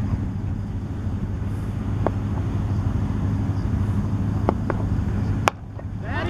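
Steady low outdoor hum with a noisy haze, broken by a few faint ticks and one sharp crack about five and a half seconds in: a cricket bat striking the ball as the delivery is played.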